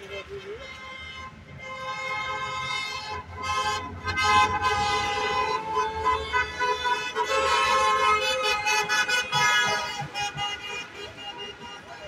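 Several car horns honking at once, long and short blasts overlapping over passing traffic: a wedding convoy driving past honking in celebration. The honking builds about a second and a half in, is loudest through the middle and fades near the end.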